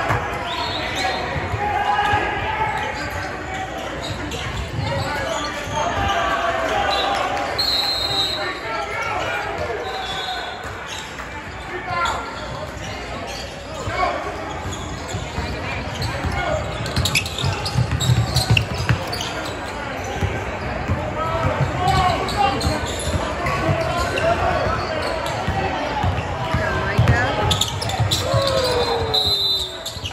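Basketball game in a large gym hall: a basketball bouncing on the hardwood court, sneakers squeaking, and players and onlookers calling out, all echoing in the hall.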